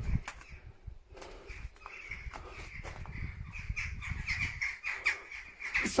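Crows calling over and over, short calls that come thicker toward the end, over a low rumble. A sharp knock sounds right at the start.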